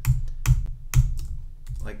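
Computer keyboard keystrokes: a few separate clicks about half a second apart while a file path is typed.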